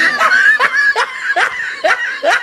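A person laughing in short repeated pulses, about two to three a second, during a pause in a comic poetry recitation.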